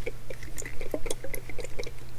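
Fingertips and nails tapping quickly and unevenly on the blue plastic base of a Doctor Who TARDIS snow globe, a rapid run of light clicks.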